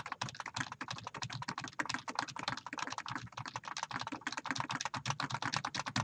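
Fast typing on a computer keyboard, about ten keystrokes a second in an uneven clatter, as the same short number is typed and entered with the Enter key over and over.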